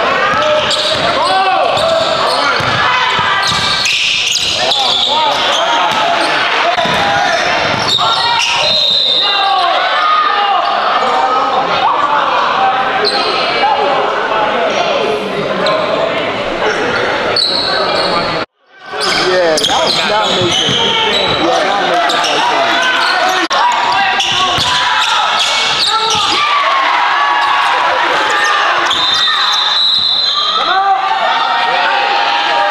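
Basketball game in a gym hall: many voices of spectators and players talking and calling out over one another, a basketball bouncing on the court, all with the hall's echo. The sound cuts out for a moment about two-thirds of the way through.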